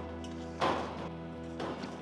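Background music with steady sustained tones, and two brief knocks about half a second and a second and a half in.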